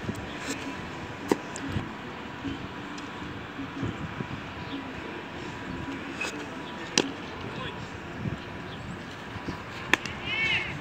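Thrown baseballs smacking into a leather glove: sharp pops about a second in and about seven seconds in, and another just before the end, over faint background voices.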